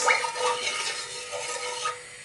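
Wooden spoon stirring curry powder through hot oil in an aluminium Dutch pot, scraping across the bottom with a light sizzle. The sound eases off a little toward the end.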